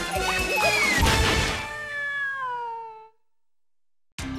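The closing bars of a cartoon's opening theme music: a crash about a second in, then a held chord that slides down in pitch and fades out, followed by about a second of silence.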